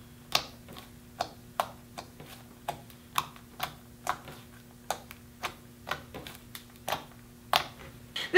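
Fingertips poking and pressing a soft, sticky slime made from Elmer's orange glitter glue, giving sharp, wet clicks and pops about twice a second as the fingers sink in and pull free.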